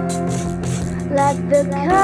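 Music from a song: a held chord over a steady percussion beat, with a short melodic phrase in the second half.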